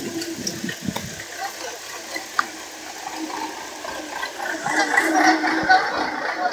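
Rain falling, with scattered short clicks of drops, growing louder near the end.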